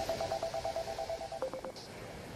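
Mobile phone ringtone: a rapid trilling tone, about ten pulses a second, that stops about a second and a half in when the call is answered, followed by a short lower beep as it connects.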